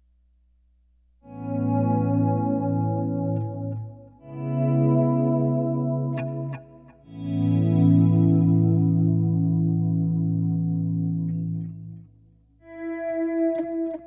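Electric guitar played clean through a Line 6 Helix amp preset: three long sustained chords of about three seconds each, each rising in and dying away, then a shorter chord near the end.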